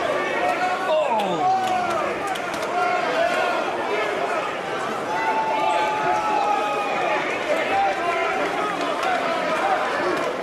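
Hubbub of a busy sports hall: many overlapping voices of spectators and coaches calling out, with one held call about five seconds in.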